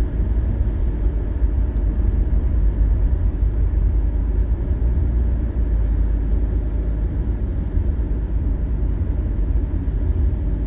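Car driving at highway speed, heard from inside the cabin: a steady low road and engine rumble.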